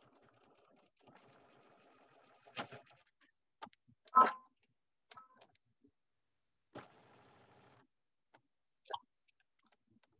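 Sewing machine stitching a seam in two short runs, with sharp clicks and knocks of handling between them; the loudest is a single click a little past four seconds.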